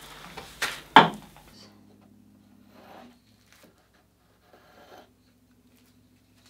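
Two sharp knocks about half a second apart as a long metal straightedge is handled against a painted wooden panel, the second a hard tap. After that, only a faint steady hum and a few small, quiet handling noises.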